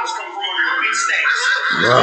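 A person's voice in a high, drawn-out exclamation, with speech around it.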